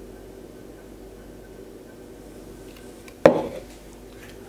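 One sharp knock about three seconds in, with a short ring after it, as the plastic Nutribullet blender cup is set down on the kitchen counter; before it only a faint steady room hum.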